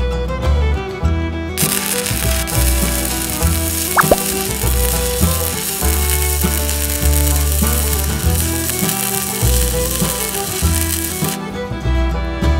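An electric welding arc crackling steadily on a steel square-tube joint, struck about one and a half seconds in and broken off shortly before the end, over background music.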